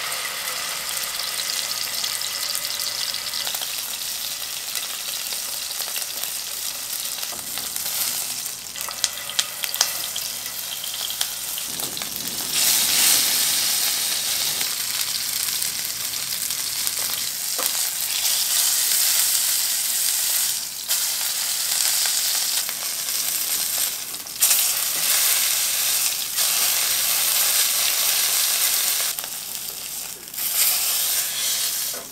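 Beef steak searing in hot oil in a frying pan: a steady sizzle that grows louder about twelve seconds in. A few sharp clicks cut through it near ten seconds.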